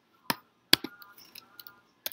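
Two sharp clicks about half a second apart, the second the louder, followed by a few fainter light ticks: a computer mouse clicking into a text field, with small handling sounds at the desk.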